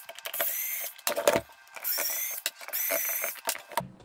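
Extruded aluminium battery case being worked off its cell pack: metal sliding and scraping against metal, with high squeals in three spells and small clicks between them.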